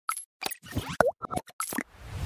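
Cartoon pop and plop sound effects for an animated logo intro: a quick run of short, separate pops, one about halfway through with a sliding pitch.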